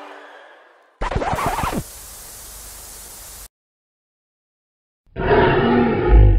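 Cartoon sound effects. About a second in comes a short loud burst with quick sliding pitches, then a steady hiss that cuts off suddenly. After a second and a half of silence, a loud pitched sound starts near the end.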